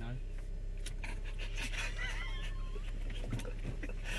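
Steady low drone inside the cabin of a Ford Focus RS, from its turbocharged five-cylinder engine. A faint voice comes in briefly about two seconds in.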